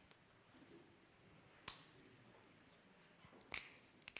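Near-silent church with two sharp snaps, one a little under two seconds in and one near the end: the priest breaking the large host at the altar.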